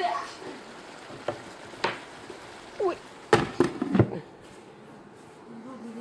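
Offal, onion and carrot frying in an electric skillet, with a steady sizzle and scattered clicks. A glass lid clatters onto the pan in a few sharp knocks about three to four seconds in, and the sizzle is muffled after that.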